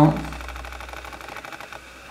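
The end of a spoken word, then a faint, fast, even ticking from a camera's lens motor.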